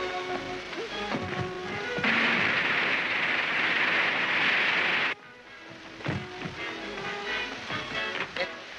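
Water pouring from a bathtub tap into an overflowing tub: a loud, steady rushing hiss for about three seconds that cuts in and out abruptly. Before and after it, a light background music score plays.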